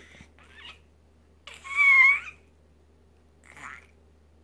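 A six-month-old baby's single high-pitched squeal of delight, about a second and a half in and lasting under a second, with faint breathy sounds before and after it.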